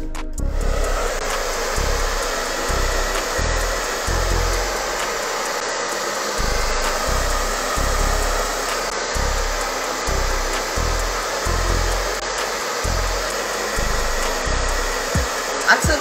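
Handheld hair dryer blowing steadily, aimed at a glued lace-wig hairline to warm the glue, with irregular low rumbles as the airflow hits the phone's microphone.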